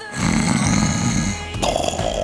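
A man snoring loudly close to the microphone, over background music. The snore changes pitch about one and a half seconds in.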